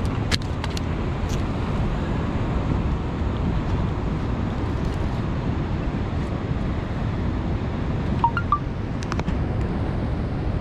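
Steady low rumble of wind buffeting the microphone on an open rocky shore, with surf behind it. A few light clicks about a second in and again near the end.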